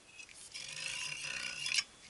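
Metal shaft being slid out of a Konica Minolta DR-311 OPC drum tube, a scraping rub of metal on metal that starts about half a second in and stops abruptly near the end.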